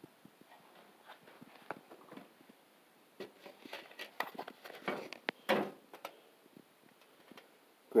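Faint scattered clicks and knocks, most of them between about three and six seconds in.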